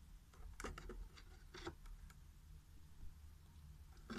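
A few faint clicks and rustles of a plastic VHS case being handled, mostly in the first two seconds, over near-silent room tone.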